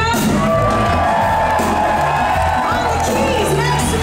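Live blues-rock band playing loud: electric guitar, bass guitar and drum kit with cymbals, with a long held note in the middle and bending notes near the end.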